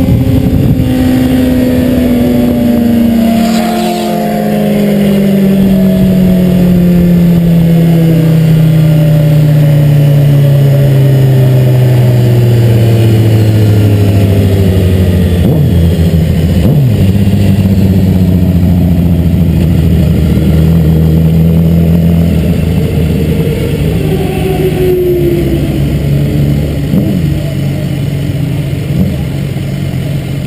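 BMW S 1000 RR's inline-four engine heard from onboard, its pitch falling smoothly over about fifteen seconds as the bike slows down. It then runs at a low, steady speed and eases further near the end, with a couple of brief blips of the throttle.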